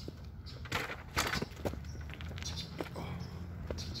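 Running footsteps on pavement: an irregular patter of a few steps a second over a steady low rumble.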